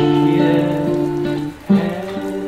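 Capoed steel-string acoustic guitar fingerpicked, its chord notes ringing out; a new chord sounds at the start and another shortly before the end, after a brief dip.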